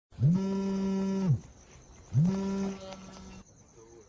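A mobile phone on vibrate buzzing twice: one buzz of about a second, then a shorter one, each sliding up in pitch as it starts and down as it stops.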